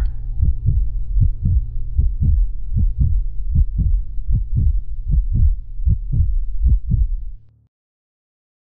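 A heartbeat sound effect: low paired thumps, a little more than one beat a second, over a low steady drone. It cuts off suddenly near the end.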